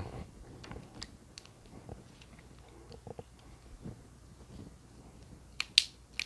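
Faint, scattered small metallic clicks and handling noise from an aluminium handheld archery release as its adjuster screw is turned and the mechanism worked by hand, with one sharp, louder click near the end.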